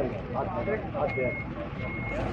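A vehicle's reversing alarm beeping: a single high tone in short beeps, about three in two seconds at uneven spacing, over men's voices.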